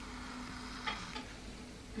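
Faint low steady hum with two or three light clicks a little under a second in.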